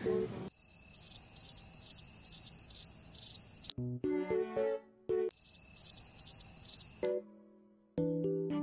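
Cricket chirping sound effect: a high, steady pulsing trill, about three pulses a second, heard twice. Both runs start and stop abruptly. A few plucky keyboard notes of background music come between them, and the sound cuts to dead silence near the end.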